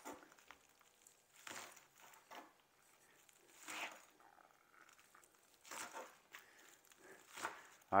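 Knife slicing through green onions onto a plastic cutting board: about six faint, irregularly spaced cuts.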